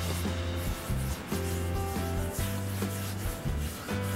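Soft background music with held notes and a steady bass line, over the rough brushing sound of palms rubbing face primer into skin.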